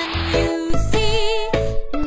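Children's nursery-rhyme song: a sung line over a bright, bouncy backing track, with a wavering held note near the middle.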